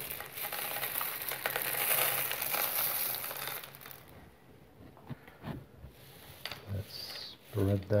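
Dried chickpeas pouring out of the cells of a plastic netting mat as it is lifted and rattling down into a glass dish for about three and a half seconds, then a few scattered clicks as the last peas drop.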